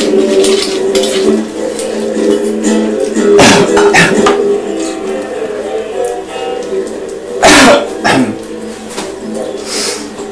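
Music with a plucked guitar over steady held tones, broken by loud sharp clattering knocks about three and a half and seven and a half seconds in, each followed by a smaller one.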